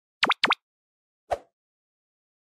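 Cartoon sound effects for an animated subscribe button: two quick pops, each swooping down and back up in pitch, then a single short click just over a second in.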